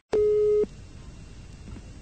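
A momentary dropout, then a single steady telephone line beep about half a second long, followed by the faint hiss of an open phone line.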